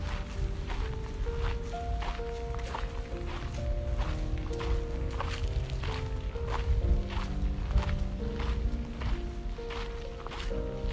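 Music of slow, held melodic notes, over footsteps crunching on a gravel path at a steady walking pace, about two steps a second.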